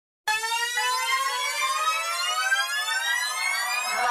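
A siren-like tone with many overtones, rising slowly and steadily in pitch, starting about a quarter second in: the intro of a sped-up, pitched-up nightcore edit of a hip-hop track.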